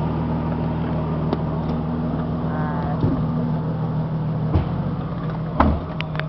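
SUV engine idling steadily, with a few light knocks over it.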